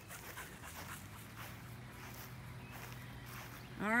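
Quiet sounds of a dog close to the microphone, panting softly and moving about, with footsteps on grass.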